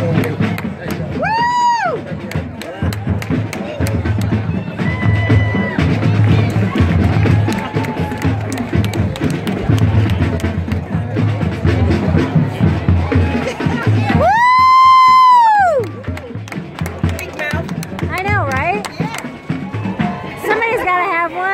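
Marching band playing on the field, a drumline beat under the winds. About two-thirds of the way through the band drops out for roughly two seconds while one loud pitched call rises, holds and falls. A shorter call of the same kind comes early on.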